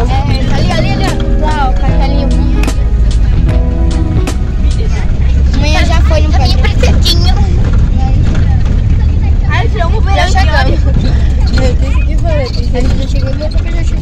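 Steady low rumble of a van's engine and road noise heard from inside the passenger cabin. Music plays over it for the first few seconds, and passengers' voices chatter over it around the middle.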